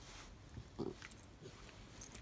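Small dog making one short, low vocal sound a little under a second in as it plays on its back while being rubbed, with faint rustling of fur and blanket.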